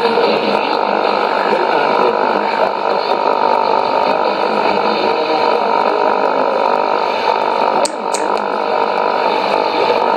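Shortwave AM receiver tuned to 13585 kHz putting out steady static and hum, with no programme audible after the station's sign-off. Two brief clicks come about eight seconds in.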